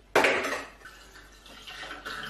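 A short knock just after the start, then liquid being poured from a plastic measuring jug through a funnel into a glass fermenter, starting quietly and growing near the end. The liquid is warm malt beer sweetened with honey for a braggot.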